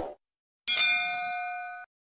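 A bell-like notification ding sound effect from a subscribe animation: one bright ring with several steady tones, starting about half a second in, lasting about a second, then cutting off abruptly. A short soft thump comes just before it, at the start.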